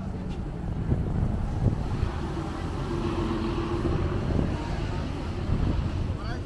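Road traffic on a bridge. A double-decker bus passes close by, swelling in the middle with a steady engine hum for about two seconds, over a low rumble of wind on the microphone.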